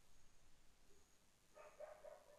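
Near silence: quiet room tone, with one faint, short pitched sound about a second and a half in.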